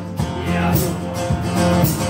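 Acoustic guitar strummed in a live solo performance, with a steady beat of accents about twice a second.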